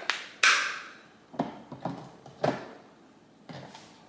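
Plastic clicks and taps from a Ninja Creami Breeze pint container and its lid being handled and fitted to the machine: one louder clatter about half a second in, then a few lighter taps.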